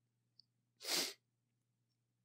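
A single short, breathy burst from a person about a second in, a sharp sneeze-like rush of air.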